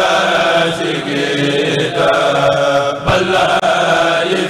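A group of men chanting a khassida (Sufi religious poem) in unison through microphones, in long held notes, with a brief break for breath about three and a half seconds in.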